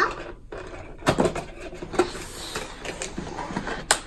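A cardboard toy box being opened and its contents slid out by hand: rustling with several sharp knocks and taps.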